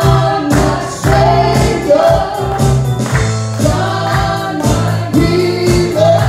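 Live gospel worship song: a man sings into a microphone while strumming an acoustic guitar in a steady rhythm, with other voices singing along.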